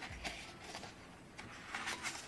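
Faint rustling and sliding of sheets of printed pattern paper as they are turned over one by one, with a few soft papery flicks near the start and near the end.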